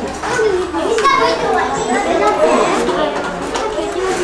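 Several children's voices chattering over one another in a classroom.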